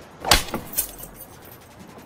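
A hard open-hand slap across a man's face: one sharp crack about a third of a second in, with a fainter smack half a second later.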